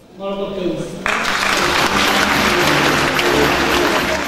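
Audience applause begins suddenly about a second in and continues steadily, with music playing underneath. A brief voice comes before it.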